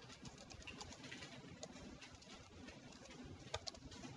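Faint computer keyboard typing: scattered soft key clicks over low room noise, with a couple of sharper clicks near the end.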